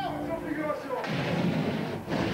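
A large pyrotechnic fireball goes up about a second in: a loud, rushing blast of flame that stops abruptly.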